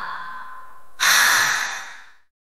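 The last held note of a song fades out. About a second in, a loud breathy exhale like a sigh cuts in suddenly and dies away, ending the track.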